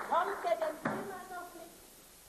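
A woman's wordless vocal exclamations, sliding up and down in pitch, with one sharp knock about a second in.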